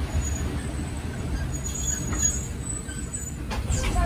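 Steady low rumble of a passenger train rolling slowly along a station platform, heard from a carriage window, with a faint high squeal about halfway through. Voices come in near the end.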